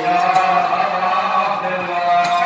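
Men's voices chanting a Muharram mourning lament (nauha) together, in long held notes.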